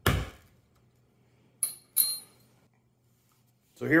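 Hammer blows driving a number five round leather hole punch through belt leather. One blow lands at the start and two more come close together about a second and a half later, those two with a short metallic ring.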